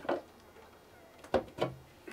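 A few short metal clunks from a tractor-trailer air line's glad-hand coupler being handled while the lines are hooked up. One knock comes at the start and two close together about one and a half seconds in.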